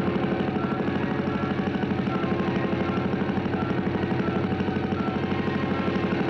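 Helicopter rotor blades chopping in a fast, even beat over a steady engine drone.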